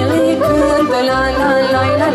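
A young woman singing a Romanian folk song into a microphone, with ornamented, bending melody lines. An amplified backing track plays under her voice, its bass notes on a steady beat about twice a second.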